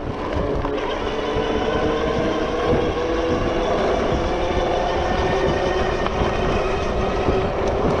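Super73 R electric bike riding along a concrete-slab path: the hub motor gives a steady whine over the rumble of tyres and wind on the microphone.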